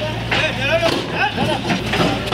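A JCB backhoe loader's diesel engine running steadily, with people talking loudly over it.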